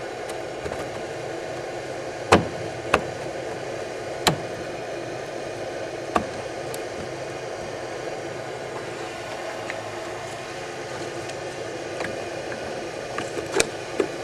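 A few sharp clicks and taps as stainless electrode plates and spacers are pushed into place inside a plastic box. The loudest come about two seconds in and near the end, over a steady background hiss.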